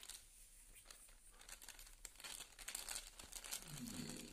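Faint crinkling of a plastic snack packet being picked up and handled, starting about halfway in.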